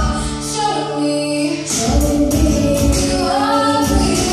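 A woman and a girl singing together through microphones over a backing track with a steady beat. The beat pauses for about a second shortly after the start, then comes back while the singing carries on.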